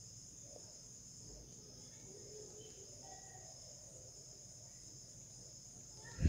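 Near silence: quiet room tone with a faint, steady high-pitched drone in the background.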